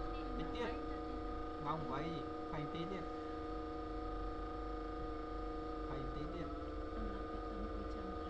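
Steady electrical hum with several held tones, with faint murmured speech underneath in places.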